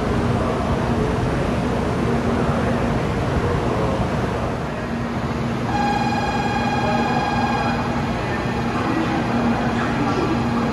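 Steady hum and rushing of a stationary 700 series Shinkansen train and the station around it. About six seconds in, a steady electronic tone of one pitch sounds for about two seconds.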